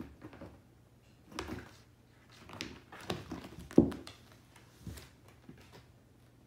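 Kitten scrabbling at and bumping a carpet-covered arch on a hardwood floor: a run of irregular bumps and scratchy scuffles, the loudest thump a little before four seconds in.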